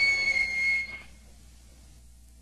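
A high, steady whistle-like tone rings on for about a second after the band stops playing, then cuts out, leaving the rehearsal tape's faint hiss and low hum.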